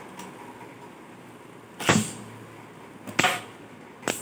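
Beyblade Burst spinning tops in a plastic stadium: as a second top is launched in, two sharp clacks about a second and a half apart ring out from the tops knocking against the stadium and each other.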